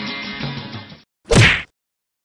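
Acoustic guitar intro music fading out, then a single short whoosh-and-whack transition sound effect that sweeps quickly down in pitch. The sound effect is the loudest thing heard.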